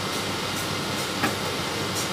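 Steady background hum and hiss from the room, with one faint tap about halfway through as the cardboard phone box is slid open.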